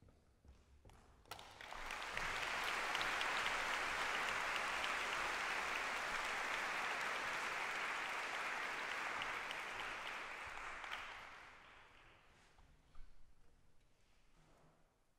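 Audience applauding in a large concert hall: the clapping starts about a second in, swells quickly, holds steady, and dies away near the end.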